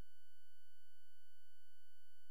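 A steady, unchanging high electronic tone with a faint low hum beneath it; no splashing or water sound is heard.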